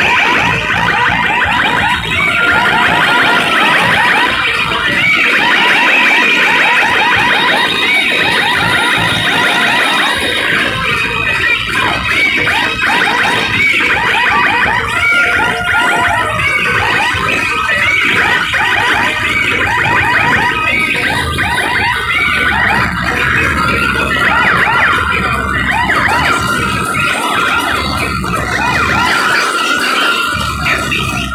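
Loud DJ sound-system music built on repeated siren-like sweeps that rise and fall in pitch. The bass drops out for several seconds in the first third and comes back heavily in the last third.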